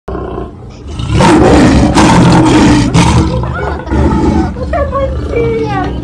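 Lion roaring behind a zoo fence in three loud, rough bursts about a second long each, then quieter.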